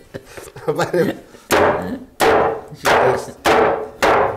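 Four heavy knife chops through roast lamb onto a wooden cutting board, about two thirds of a second apart, each with a short ringing tail.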